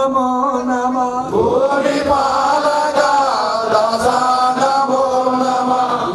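A man chanting an Ayyappa devotional song into a microphone, drawing out long held notes; about a second in his voice rises into a new note that he sustains almost to the end.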